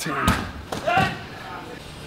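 A brief spoken voice with a single sharp thud about a quarter of a second in.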